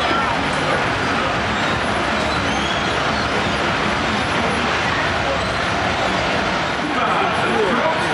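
Fairground crowd ambience: a steady, loud mechanical rumble with many voices mixed in.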